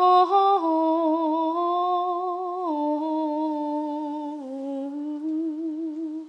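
A singer humming a long wordless phrase with no accompaniment. The note is held with slight vibrato and steps down in pitch a few times before ending right at the close.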